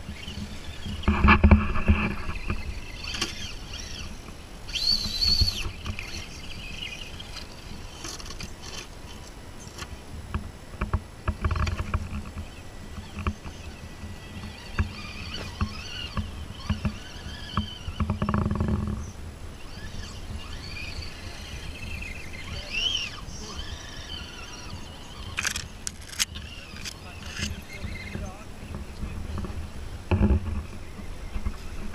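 Electric motors and geartrains of RC scale crawler trucks whining as they climb a dirt bank, the pitch rising and falling with the throttle, with scattered clicks and scrapes of the trucks on soil. Two louder low rumbles come near the start and about halfway through.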